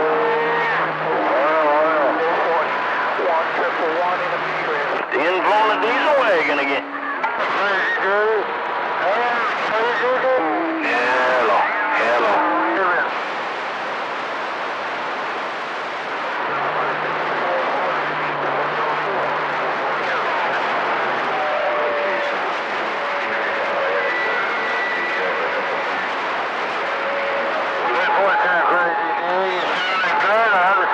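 CB radio receiver on channel 28 (27.285 MHz) picking up long-distance skip: constant static hiss with faint, garbled voices warbling through it, densest in the first half and again near the end. Steady heterodyne whistles from other stations' carriers come and go throughout.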